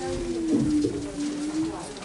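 A person's voice holding one long, steady note that steps down in pitch about half a second in and stops near the end.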